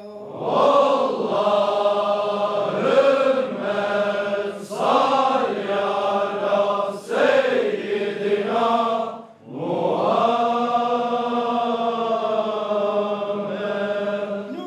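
Men's voices chanting a Sufi devotional prayer in melodic phrases a second or two long, then after a brief break about nine seconds in, one long held phrase.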